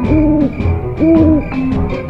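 Two owl hoots, each about half a second long and a second apart, over background music with a steady beat.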